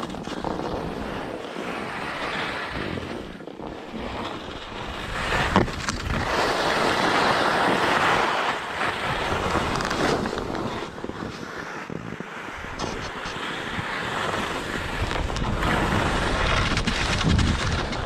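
Alpine skis sliding and scraping over packed snow, a steady rough hiss that swells for a few seconds in the middle, with wind buffeting the microphone. A single sharp click comes about five and a half seconds in.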